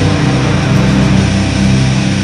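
Unblack metal song by a full band: distorted electric guitars playing held chords over bass and fast, even drumming.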